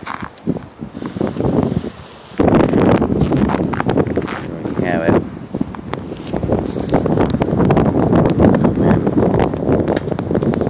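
Blizzard wind blowing across the microphone: rumbling wind noise that comes in suddenly a couple of seconds in and stays loud.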